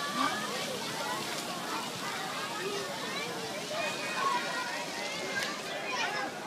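Many children's voices overlapping in the background with splashing water, a steady busy mix with no single voice or sound standing out.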